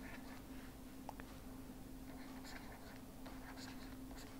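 Faint scratching of a stylus writing on a pen tablet in short, irregular strokes, over a steady low electrical hum.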